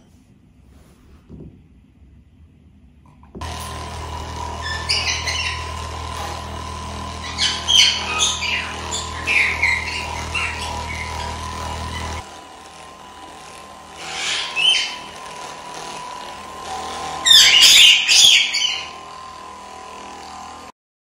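Handheld percussion massage gun switched on and running against the body with a steady hum; its low drumming drops away partway through while the hum continues. Bird chirps come over it in several bursts, loudest near the end.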